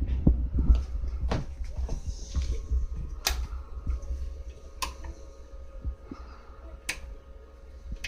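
A running desktop PC's fans giving a steady low hum with a faint tone, broken by several sharp clicks.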